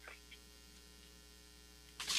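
Near silence, with a faint steady electrical hum from the sound system.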